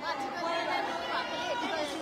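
Speech: people talking, with background chatter.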